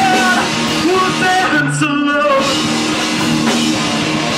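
Live rock band playing loud: electric guitars and a drum kit under a vocalist singing into a microphone.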